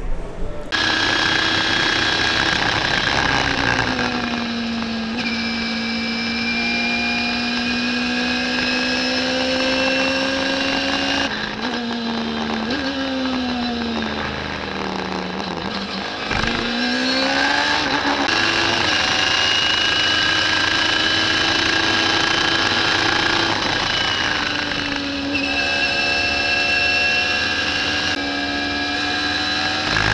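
Radical SR3 race car engine heard from the onboard camera, pulling hard on a track lap. About thirteen seconds in, its pitch falls sharply as it brakes and shifts down for a slow corner, then climbs again as it accelerates out, over steady wind and road hiss.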